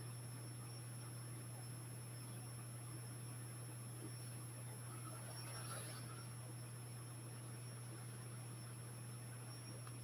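Quiet room tone: a steady low electrical hum with a faint, steady high-pitched whine. About five to six seconds in there is a faint brief scratch, fitting a marker stroke on the drawing board.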